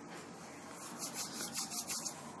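Hands rubbing an oily homemade serum into the skin of the face and neck. A soft hiss turns into a quick run of rubbing strokes in the second half, several to the second.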